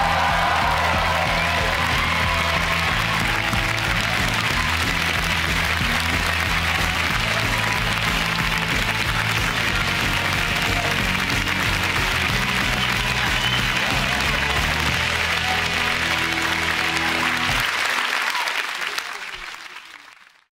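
Studio audience applauding and cheering over closing theme music. Both fade out near the end.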